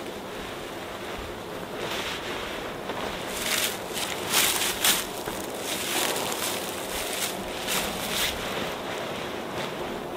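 Hammock quilts being handled: a string of soft fabric swishes and rustles as the quilt is pulled out, lifted and draped around the hammock, over a steady windy hiss.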